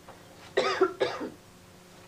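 A woman coughs twice in quick succession, about half a second in.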